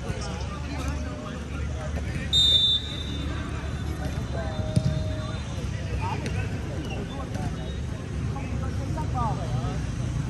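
Outdoor football game: distant players' voices and shouts over a steady low traffic rumble, with one short, shrill referee's whistle blast about two and a half seconds in, the loudest sound here, and a single sharp thud of the ball being kicked a little before five seconds.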